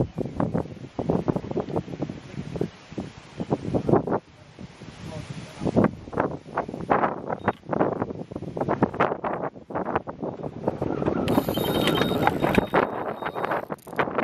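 Gusty wind buffeting the microphone. About eleven seconds in, a Delkim Txi-D bite alarm starts sounding a high steady tone that lasts a couple of seconds: a carp has taken the hook bait and is running with the line.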